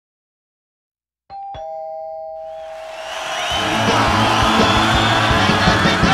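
A two-tone doorbell chime, ding-dong, rings out about a second in, its two notes, the second lower, ringing on. A rising swell then leads into loud upbeat music with a steady beat, which takes over about halfway through and is the loudest sound.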